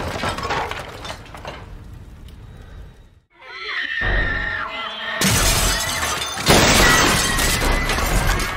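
Horror-film soundtrack: crashing and breaking sounds mixed with music. It drops to a brief silence about three seconds in, then comes back with a high wavering tone and dense, loud crashing noise that is loudest near the end.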